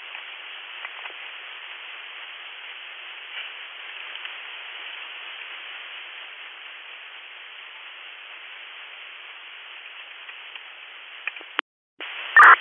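Two-way radio channel carrying steady static hiss with no voice, cut off by a short dropout just before the end.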